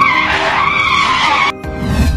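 Tyre-screech sound effect of a skidding motorbike, a loud wavering squeal that cuts off suddenly about one and a half seconds in, followed by a low rumble, over background music.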